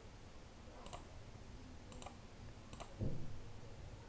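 Faint computer mouse clicks, three of them spaced about a second apart, over quiet room tone. A soft low thump comes about three seconds in.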